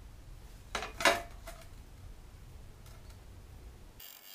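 Metal tools clinking as they are handled: two sharp clinks about a second in, the second loudest with a short ring, then a few fainter taps.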